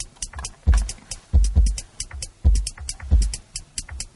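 Drum loop playing from Steinberg's LoopMash in Cubase 5: an electronic beat of deep kick drum hits and quick, crisp hi-hat ticks. The kicks fall in an uneven pattern, the loop's slices rearranged to follow the rhythm of a master loop.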